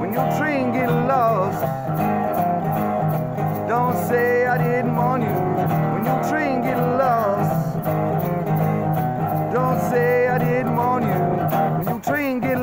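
Resonator guitar strummed steadily, playing a blues-style instrumental break between verses.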